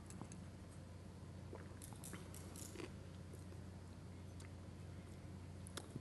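A man drinking from a glass close to the microphone, faint, with small mouth and glass clicks scattered through, most of them about two to three seconds in, over a steady low hum.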